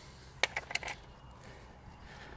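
A quick cluster of light clicks and taps from handling the roof bar and its plastic end cap, about half a second to one second in.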